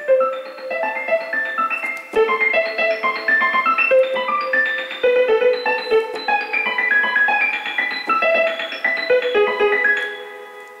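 Casio CTK-4200 home keyboard playing its piano voice with the harmony and arpeggio functions switched on, giving a continuous run of quick stepping notes that ring on.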